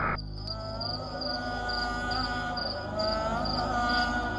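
Cricket chirps repeating steadily, about two a second, over a musical bed of long held tones that waver slowly in pitch.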